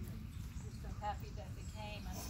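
Faint, low murmuring voices of people gathered close by, with short pitched vocal sounds about a second in and near the end, over a steady low rumble.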